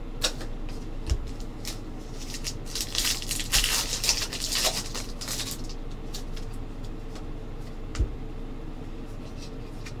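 Trading-card pack wrapper crinkling as it is opened, most densely from about two and a half to five and a half seconds in. A few soft taps of cards being handled come before and after.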